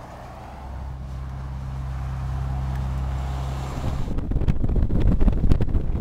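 Inside a moving van: a steady low engine drone for the first few seconds, then louder road noise with rattling, knocks and clatter from about four seconds in.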